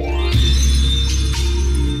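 Electronic dance music in a DJ mix, with a steady heavy bass. A rising sweep ends in a bright crash about a third of a second in.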